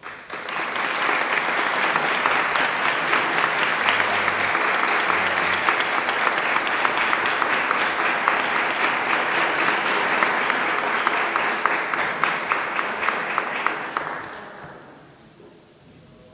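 An audience applauding, many hands clapping at a steady level, then dying away about fourteen seconds in.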